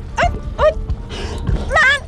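A person's short whimpering cries and yelps of distress: several brief calls that rise and fall, then a longer wavering one near the end. A short rustle comes about halfway through.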